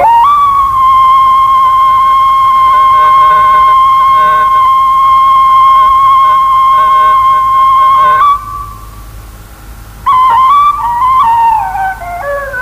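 Background music led by a flute-like wind instrument. It holds one long high note for about eight seconds, goes quiet for a moment, then plays a wavering, ornamented phrase.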